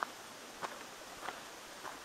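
Faint footsteps walking on a paved forest trail, about three steps at an easy pace, over a faint steady background hiss.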